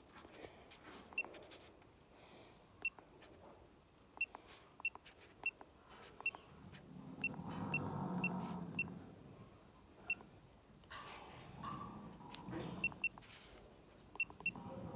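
Keypad beeps from a Gallagher HR5 handheld EID tag reader as a name is typed in letter by letter, multi-tap style. A series of short, high beeps comes in quick runs of several presses, over a muffled background sound that swells in the middle.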